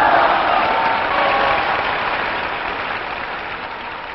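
Large crowd applauding and cheering, loudest at the start and slowly fading.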